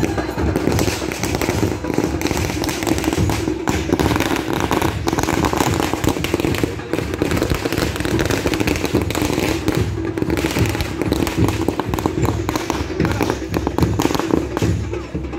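A string of firecrackers going off in a long, continuous run of rapid pops.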